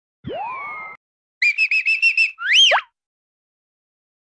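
Edited-in cartoon sound effects: a short rising boing-like glide, then a quick run of about seven high chirps, then a whistle that slides up and back down. The sounds stop a little before the end.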